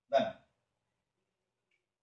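A man speaks one short word early on, followed by near silence.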